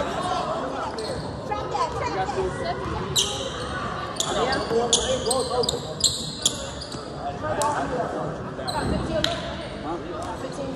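Basketball game on a hardwood gym floor: a run of short, high squeaks from sneakers in the middle, a basketball bouncing, and voices echoing in the large hall.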